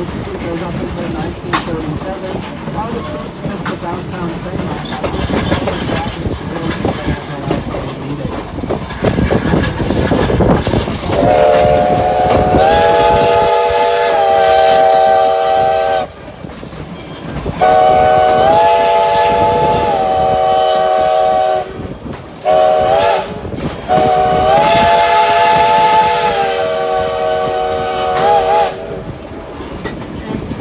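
Steam locomotive No. 93, a 2-8-0, rolling with its passenger cars, the wheels running on the rails. Then the locomotive's steam whistle sounds several notes together in a long, long, short, long pattern: the grade-crossing signal. Each long blast steps up slightly in pitch a second or so after it starts.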